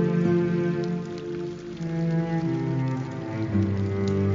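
Slow, calm instrumental music with long held notes, over a steady patter of falling water.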